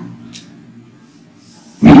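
A pause in a man's amplified talk: only a faint steady hum and one brief soft hiss a moment in. His speech resumes near the end.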